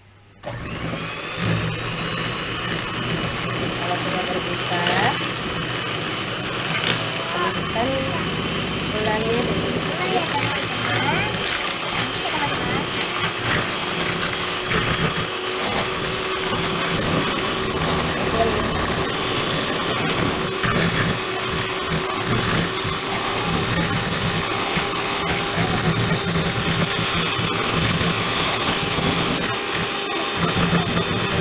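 Electric hand mixer starting up about half a second in, then running steadily with a motor whine as its beaters whip egg whites and sugar in a plastic bowl.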